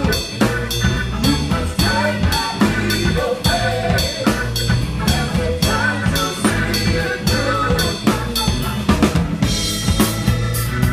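Drum kit played with sticks in a live band: snare, bass drum and cymbal strokes keep a steady beat over bass and other pitched instruments.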